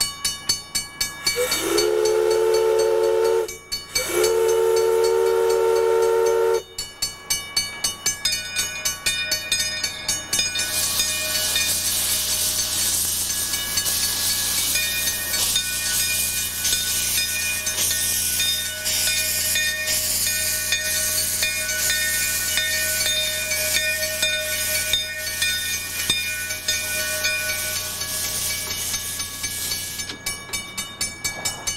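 Narrow-gauge steam locomotive blows two whistle blasts of about two seconds each, a second or so in. It then moves off with loud hissing steam from its open cylinder cocks over a rhythmic beat.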